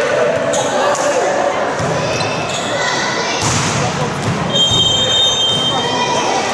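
Echoing voices of players and spectators in a large sports hall during a volleyball match, with occasional ball bounces. Near the end a steady high whistle tone sounds for about a second.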